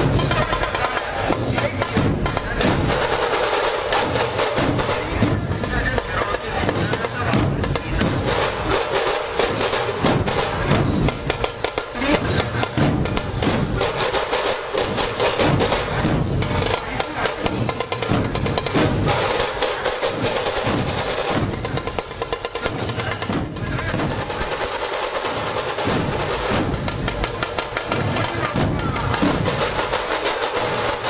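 A large troupe of dhol drums beaten together in a fast, dense, continuous rhythm.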